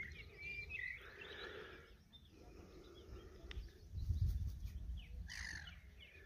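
Small birds chirping: a few short calls near the start and more near the end. A low rumble of wind on the microphone swells about four seconds in and is the loudest thing heard.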